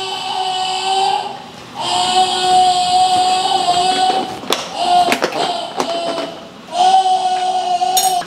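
A woman's voice singing long, steady held notes at one pitch, four times with short breaks. A few short clicks and knocks from work at the kitchen counter fall in the middle.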